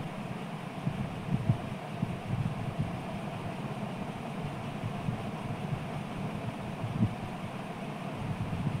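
Steady low rumbling noise of a gas stove burner running under an iron tawa on which whole cumin seeds are dry-roasting.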